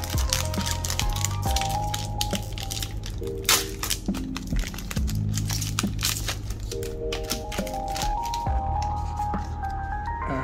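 Background music, with the foil wrapper of a Pokémon booster pack crinkling and tearing as it is opened, including a sharp crackle about three and a half seconds in.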